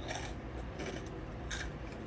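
A person eating crunchy Froot Loops cereal topped with ground beef: faint crunching with about three short clicks, from chewing and the spoon.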